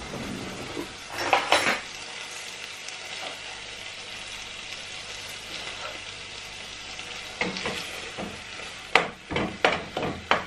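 Mackerel and tomato masala sizzling steadily in a pot on a gas hob. A brief handling noise comes about a second and a half in, and near the end a quick series of knocks and scrapes as a wooden spoon stirs against the pot.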